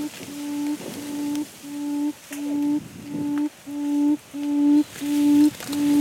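Quail's low hooting call: a single note repeated steadily, about one and a half times a second, each note about half a second long and growing gradually louder.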